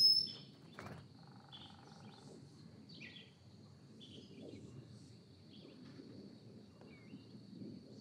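Faint ambience with small birds chirping: a quick high rising chirp right at the start and a few soft calls later on, over a steady faint high-pitched tone.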